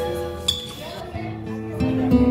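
Classical guitar notes ringing out and fading, with a single sharp glass clink about half a second in. New strummed chords come in near the end.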